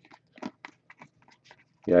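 Sleeved trading cards being shuffled through by hand: a quick run of light plastic clicks and crinkles.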